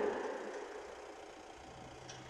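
Faint background hiss as the voice trails off, with a faint steady low hum starting near the end.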